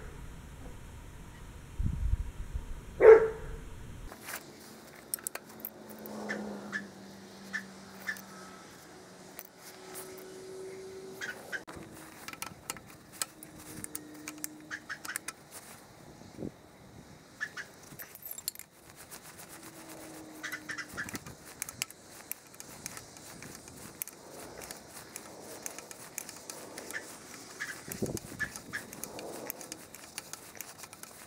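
Wrench work on tractor bolts played back at four times speed: quick metal clicks and clinks of wrenches, with a dog's barks raised by the speed-up into short chirps. One sharp, louder sound about three seconds in.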